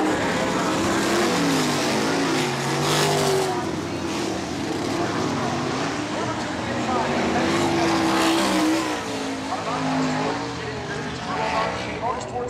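Winged sprint cars' V8 engines running together around the dirt oval, their pitch rising and falling as the cars circle the track.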